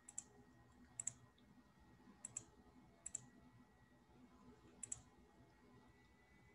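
Computer mouse clicking: five quick pairs of clicks, spaced about a second apart, with near silence around them.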